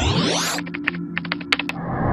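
Outro music bed with synthetic sound effects: sweeping pitch glides at the start, then a quick run of about ten sharp clicks, like typing, in the middle.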